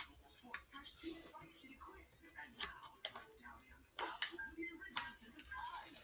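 Faint, irregular clicks and small scrapes of a hard plastic phone case being worked at by hand as it is prised off a phone, with a few sharper clicks about four and five seconds in.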